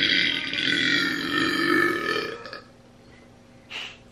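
A person's long, drawn-out burp that stops about two and a half seconds in.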